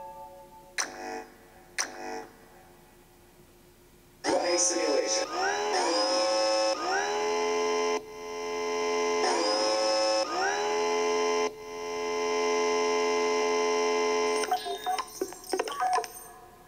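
Electronic sound effects from a touchscreen rover-driving simulation: two short blips, then a loud synthesized motor-like hum that swoops up in pitch and restarts several times over about ten seconds as the virtual rover moves across the map. The hum ends in a flurry of quick chirps near the end.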